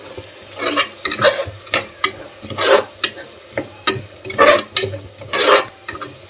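Steel spoon stirring and scraping thick egg masala in an aluminium pot: repeated scraping strokes, a little over one a second, over a light frying sizzle.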